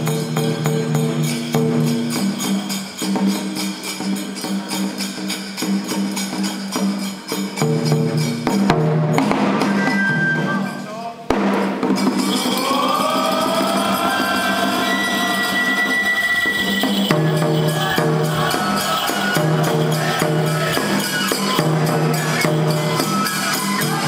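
Toramai festival music: taiko drum beats under rapid, continuous clashing of small metal hand cymbals, with pitched melodic parts held over them. The playing dips briefly about eleven seconds in, then resumes.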